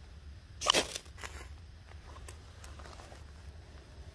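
Paper birch bark being handled and worked with a knife: one short scraping rustle about a second in, then a few faint ticks and crinkles of the dry bark.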